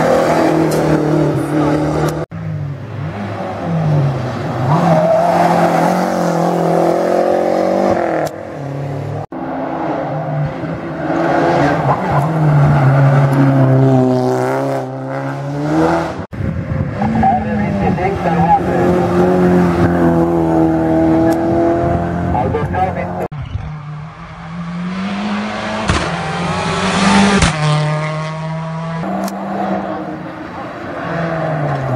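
Competition car engines driven hard uphill, one car after another: each engine climbs in pitch through the revs, drops at the gear changes and climbs again. Near the end a higher hiss rises with one car's approach.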